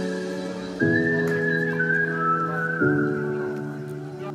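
Background music: sustained chords that change twice, under a high, whistle-like melody.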